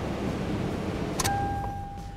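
Toyota 4Runner's 1GR-FE V6 engine idling, then a sharp click a little over a second in as the key is turned. A steady electronic warning chime from the dashboard sounds and keeps going, while the engine noise dies away.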